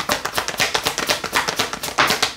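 Tarot cards being shuffled overhand, a rapid, even run of soft card-against-card clicks.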